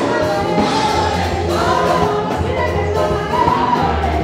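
Church congregation singing a gospel praise song together over amplified music, with a heavy bass line underneath.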